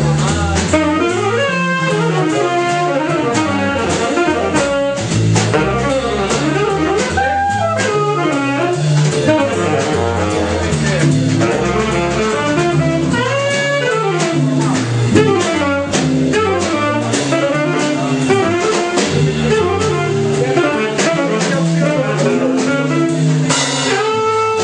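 Live jazz band: a tenor saxophone plays quick, winding runs over electric guitar, bass and drums. Near the end some held sax notes come in.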